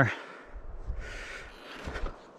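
Low rumble of wind on the camera's microphone, with two faint knocks about one and two seconds in.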